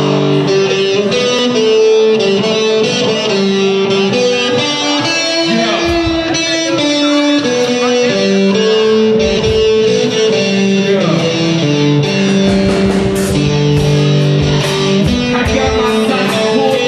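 Electric guitar played live through an amplifier, a slow melody of long held notes. In the last few seconds, crisp drum-kit cymbal hits join in.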